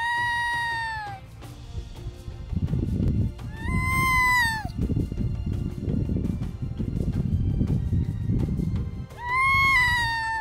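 Harp seal pup in its white coat crying three times, each cry about a second long, rising slightly and then falling away in pitch, with the cries a few seconds apart.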